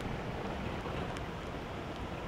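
Small flatbed truck driving past on a wet road: a steady rumble of engine and tyre noise.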